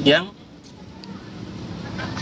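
A man's voice ends a word, then a pause filled with an even hiss and rumble of distant road traffic that grows slowly louder.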